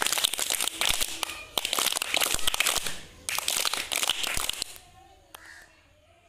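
A group of children clapping, a dense, uneven patter of hand claps that dies away about four and a half seconds in.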